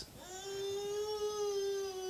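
A baby crying: one long, steady wail held on a single pitch, starting just after the preacher's words stop.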